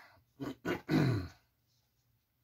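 A man clearing his throat: three short rasps about half a second in, the last one longest and falling in pitch.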